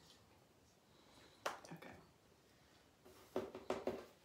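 A long spoon clinking and knocking against a tall glass pitcher as sangria packed with chopped fruit is stirred: one sharp click, then a quick run of several knocks near the end.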